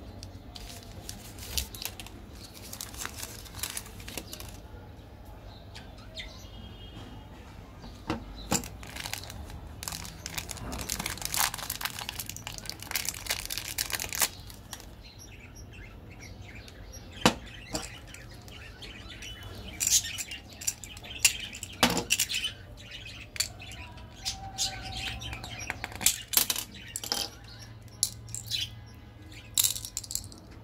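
Plastic candy wrappers crinkling, rustling and tearing in bursts as they are handled and opened, with sharp clicks and taps of plastic packaging. The longest stretch of rustling comes near the middle, and a steady low hum runs underneath.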